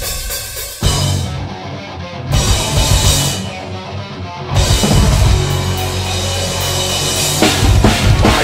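A live metal band playing the opening of a song: a held note, then the full band kicks in about a second in, with the drum kit's bass drum and cymbals pounding under the guitars and stopping and restarting in short stabs.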